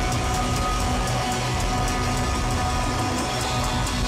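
Live rock band playing: electric guitars and bass over drums, with a steady run of cymbal hits keeping the beat.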